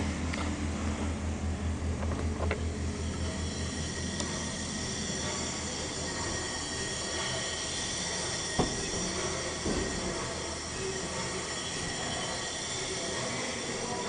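Large triple-expansion pumping engine turning over on compressed air: a steady low mechanical rumble with a constant high hiss, pulsing for the first few seconds, and two short knocks partway through.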